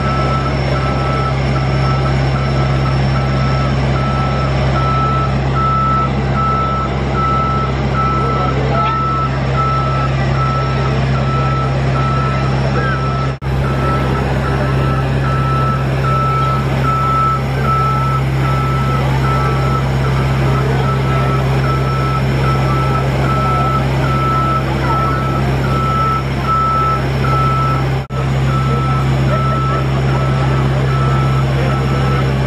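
Scissor lift raising its platform: its motion alarm beeps steadily and evenly over the low, steady hum of its drive.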